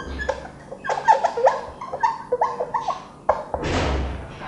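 Marker pen squeaking on a whiteboard as a word is written: a quick run of short squeaks that rise and fall in pitch, then a soft rushing sound near the end.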